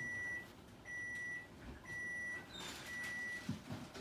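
Electronic beeper sounding four steady, high-pitched beeps about once a second, each roughly half a second long.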